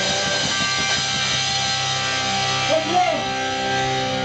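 Live rock band playing: distorted electric guitar chords held and ringing over bass and drums, with a voice briefly about three seconds in.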